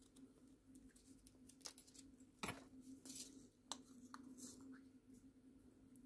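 Faint clicks and rustles of small plastic bags of diamond-painting drills being handled and sorted in a plastic storage box, the sharpest click about halfway through, over a low steady hum.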